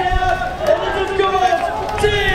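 Singing in long held notes, with a laugh at the start.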